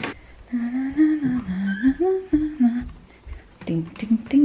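A woman humming a short tune without words: a few held notes stepping up and down in pitch, with low bumps from the camera being handled in the second half.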